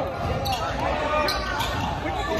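A basketball bouncing on a hardwood gym floor, a few dribbles, with voices in the hall behind.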